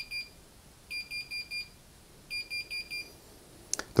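Bosch washing machine's control panel beeping an error alarm: sets of four short, high beeps repeating about every one and a half seconds while the display shows error F:16. The alarm points to a faulty door lock.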